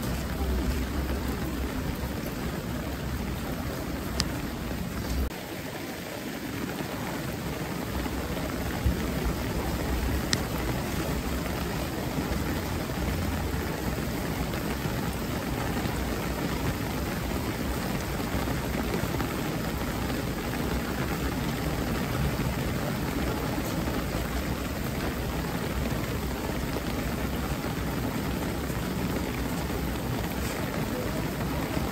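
Steady rain falling, an even hiss with a low rumble underneath that dips briefly about five seconds in.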